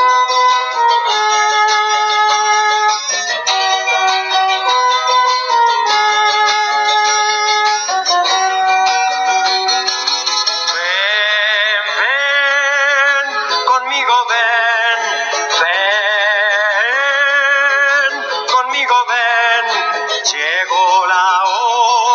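A song: a plucked-string melody for the first half, then a singing voice with vibrato comes in about halfway through over the accompaniment.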